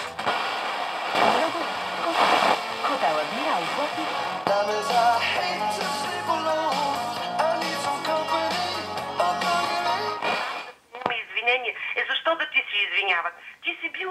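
Homemade TDA7088T FM radio playing through its loudspeaker while being tuned across the band, jumping from station to station: music with a voice, then a different song from about four and a half seconds in. About ten and a half seconds in, the sound drops out briefly, and a station with a thinner, narrower-sounding voice comes in.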